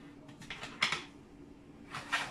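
Light handling sounds of kitchen items on a counter: a few soft knocks and a short rustle a little under a second in, with another near the end as a paper pouch is picked up, over a faint steady hum.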